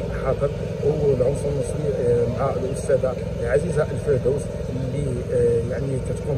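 A man speaking continuously into a handheld microphone, over a steady low rumble.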